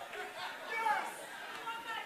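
Members of a congregation talking and reacting at once, several voices overlapping, faint and distant.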